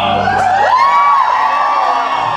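Audience whooping and cheering over operatic music, with a long whoop that rises and holds about half a second in.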